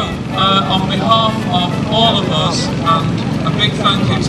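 A man's voice speaking into a handheld microphone, over a steady low rumble.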